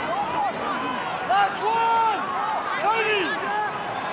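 A man's voice over steady stadium crowd noise.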